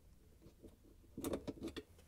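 Plastic rear dish rack stop on a dishwasher's metal rack slide being pried free with a flat-blade screwdriver: after about a second of quiet, a quick run of light clicks and rattles as the locking tab is pushed open.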